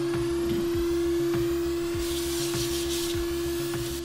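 Vacuum cleaner running in reverse as a blower, a steady motor hum with one held whining tone, blowing dust out of a PC case side panel's vents.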